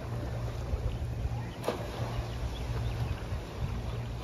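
Low, steady outdoor rumble of wind and small waves at the water's edge, with one sharp click about one and a half seconds in.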